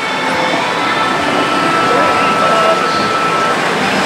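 Steady din of a pachislot hall: many slot machines' electronic sound effects and music blend into one dense wash. A single held electronic tone sounds from about a second in until about three and a half seconds.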